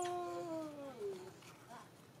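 Baby macaque giving one long, steady cry that drops in pitch and stops a little over a second in.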